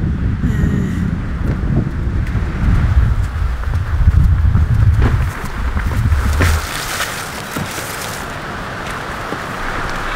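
Wind buffeting the microphone with a low rumble, which drops away about six and a half seconds in to a quieter, steady hiss.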